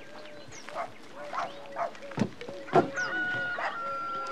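Farmyard poultry calling: a run of short clucks and squawks, two louder sharp calls just past the middle, then one long drawn-out call through the last second.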